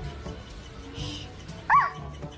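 Background music with a light beat, and near the end one short, high animal call that rises and falls in pitch.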